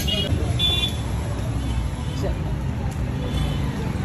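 Street traffic noise with a steady low rumble, and two short, flat, high-pitched toots in the first second, like a vehicle horn.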